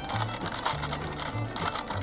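Plastic food wrapper crinkling as it is opened by hand, over background music with a steady, repeating bass line.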